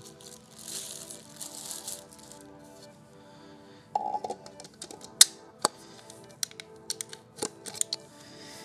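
Background music, with plastic packaging rustling in the first couple of seconds, then a run of sharp clicks and knocks from the second half on as the Godox SL60W LED video light and its parts are handled.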